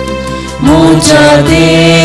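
Liturgical hymn music: an accompaniment holds steady chords, then a voice starts singing about half a second in and the music gets louder.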